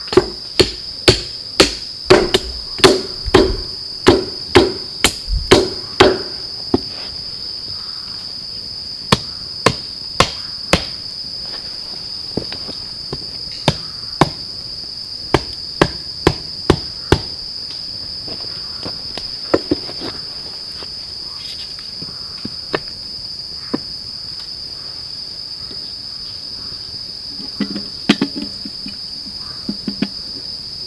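Hatchet chopping wood in sharp blows, about two a second for the first six seconds, then slower and more spaced out, with a few knocks of wood near the end. A steady high-pitched drone of insects runs underneath.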